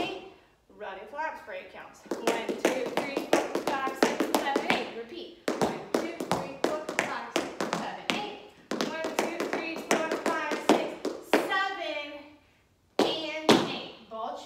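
Tap shoes striking a hard studio floor in quick rhythmic strokes as a tap dancer steps through a routine, with a woman's voice speaking over them. The taps stop briefly about twelve seconds in, then resume.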